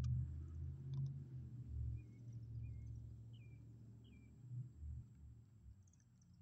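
Low rumble on the phone microphone outdoors, with a single sharp click about a second in. Four faint, short high chirps, evenly spaced about two-thirds of a second apart, come between two and four seconds in.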